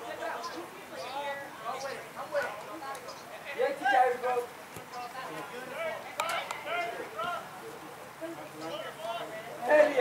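Indistinct voices of soccer players and onlookers calling out across the field, in scattered short shouts and chatter, with a few short sharp knocks.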